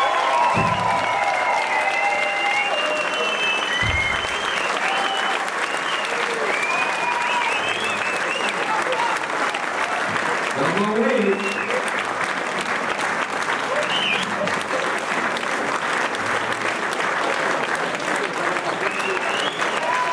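Concert audience applauding steadily, with scattered shouts from the crowd.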